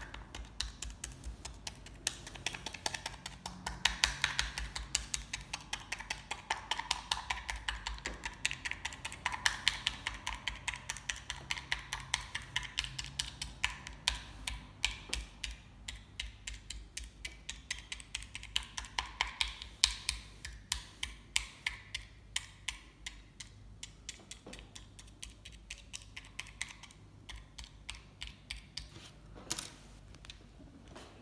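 Toothpick piercing aluminium foil stretched over a packed hookah bowl: a rapid run of light taps, about four or five a second, thinning out over the second half.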